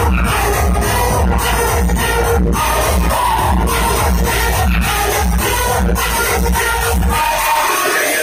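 Loud dance music played by a DJ over a large sound system, with a steady bass beat of about two beats a second. The bass drops out about a second before the end.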